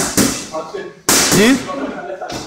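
Two sharp smacks of punches landing on a heavy punching bag, about a second apart, with a short shout of "yeah" after the second.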